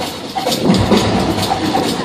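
Loud music with a steady beat.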